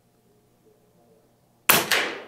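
Air Venturi Avenge-X .25 caliber PCP air rifle firing a single shot about a second and a half in: a sudden sharp report with a short ringing tail.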